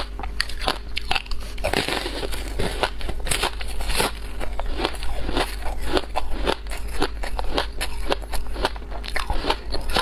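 Close-miked crunching of ice balls coated in passion fruit pulp, bitten and chewed, heard as a dense run of sharp cracks and crackles.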